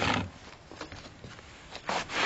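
Rustling handling noise as wires and clips are moved and the camera is shifted: a short rustle at the start, a few faint clicks, and another rustle near the end.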